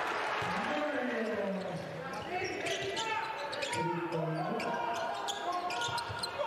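A basketball being dribbled on a hardwood court, under a steady din of crowd voices in the arena.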